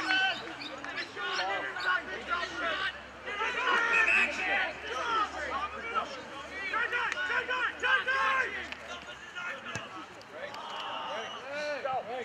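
Players and spectators shouting and calling to one another across an outdoor Australian rules football ground during open play, many voices overlapping throughout, with a few short thuds of the ball being kicked or handled.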